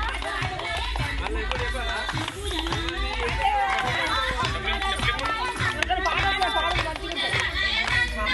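A group of women singing a Telugu Bathukamma folk song together, with other voices talking over it.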